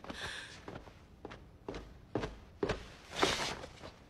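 Footsteps: about five steps roughly half a second apart, with a breathy sound at the start and a louder one a little after three seconds in.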